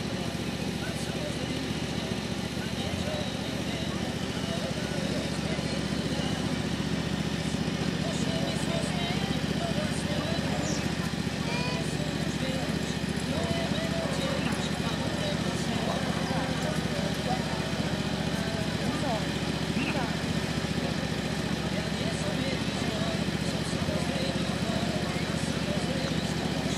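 Indistinct talking among a group of people standing nearby, over a steady low background rumble.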